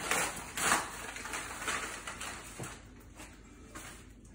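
Yellow padded paper envelope being torn open and rustled, loudest in the first second and a half, then quieter paper handling as the contents come out.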